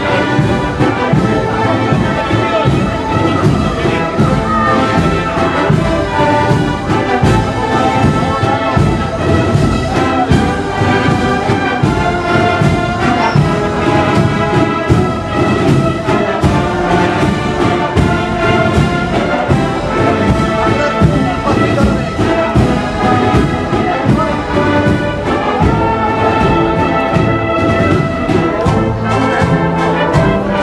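Agrupación musical (Andalusian processional brass-and-drum band) playing a procession march: trumpets and trombones carry the melody over a steady drum beat.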